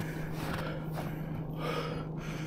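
A man's breathing close to the microphone, with soft breaths over a steady low hum.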